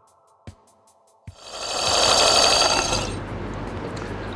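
Soft background music with a slow steady beat, which stops about a second in; then a line-spooling machine whirs loudly with a high whine as it winds braid backing onto a Daiwa BG MQ 6000 spinning reel's spool, easing after a couple of seconds to a lower steady hum.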